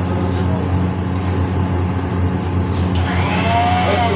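Steady low hum of a running machine, even and unbroken.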